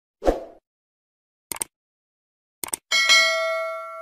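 Subscribe-button animation sound effect: a short pop, then two quick mouse clicks about a second apart, then a bright bell ding that rings on and slowly fades.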